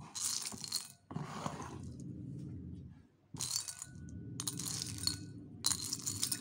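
Small round ice pieces from a pop-it mould clinking and rattling against each other and a ceramic bowl as a hand stirs through them, in four short bursts.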